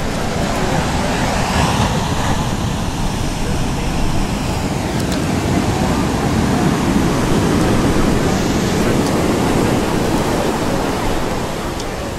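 Steady rushing roar of large ocean waves breaking, with a faint indistinct voice.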